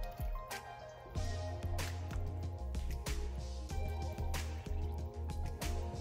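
Background music with a steady bass line, over several small splashes and drips of water as pieces of smoked turkey meat are dropped by hand into a pot of water.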